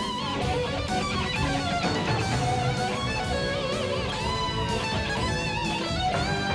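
Electric guitar solo played live: sustained high notes bent and shaken with wide vibrato, over a full rock band backing.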